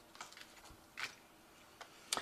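Faint clicks and light taps of tarot cards being drawn from a deck and laid down: a few small ticks, the clearest about a second in.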